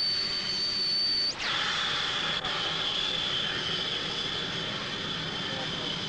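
Jet engine whine from an A-10 Thunderbolt II's rear-mounted turbofans: a high, steady tone over a rushing noise. About a second and a half in, the tone steps down in pitch and then holds steady.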